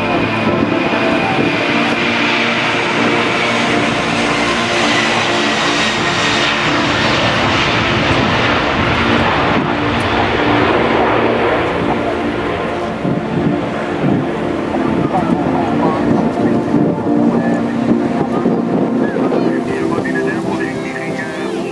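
Four turbofan engines of a Boeing 747-400 at takeoff power during the takeoff roll and liftoff: a loud, steady jet noise with a high fan whine that falls in pitch as the aircraft passes.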